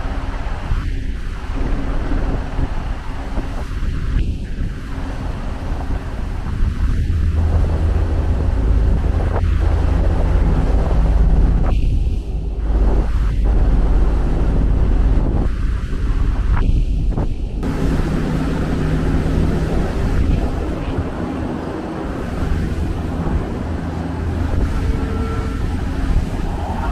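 Wind buffeting the microphone over the rush of churning seawater between two ships running close side by side at sea, with a deep, steady low rumble underneath.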